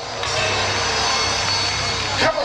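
Live gospel band music: a steady, sustained backing with a continuous low bass.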